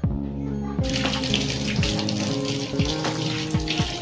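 Water running from a kitchen tap over hands rinsing a vegetable, starting about a second in. Background music with a beat and repeated deep falling bass notes plays throughout.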